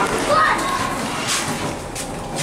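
Children's voices and chatter, with a short sharp click about one and a half seconds in.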